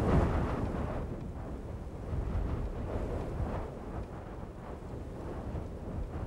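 A low, rumbling whoosh of wind that rises and falls a little.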